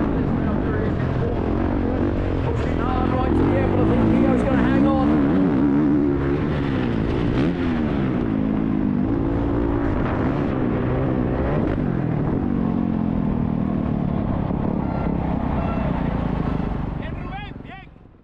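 Honda CRF450R motocross bike's single-cylinder four-stroke engine heard from the rider's helmet camera, its revs rising and falling at part throttle over wind noise on the microphone. The sound fades out near the end.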